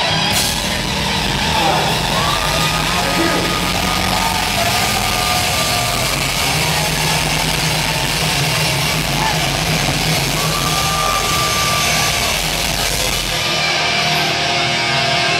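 Heavy metal band playing live through a club PA: distorted electric guitars, bass and drums, loud and dense. Two long high notes are held over the band, one early and one later on, and the deep bass drops out just before the end.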